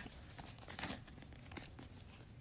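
Quiet room tone with faint rustling, like paper being handled, and a few small soft clicks.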